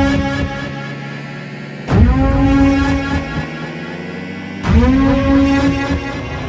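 Electronic soundtrack: a deep, buzzing synth tone that swoops up in pitch and then holds, starting afresh twice, about every three seconds.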